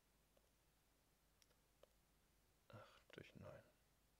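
A few faint, sparse clicks as a calculation is entered on a computer. A short, quiet mumble of a man's voice comes about three quarters of the way in and is the loudest sound.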